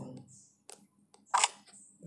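Fingertip taps on a phone touchscreen while a piece is selected in a chess app: two faint clicks, then one sharper tap about one and a half seconds in.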